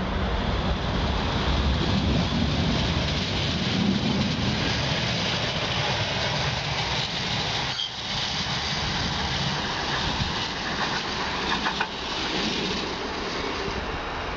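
Manchester Metrolink tram pulling away from the platform and running off down the track: a steady rumble of wheels on rail and running gear that fades slightly near the end as it draws away.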